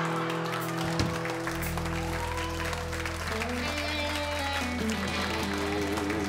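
Audience applauding while a band plays a short instrumental sting of held chords, with a bass note coming in about a second and a half in.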